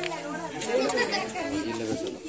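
Several people talking over one another: background chatter of a small crowd.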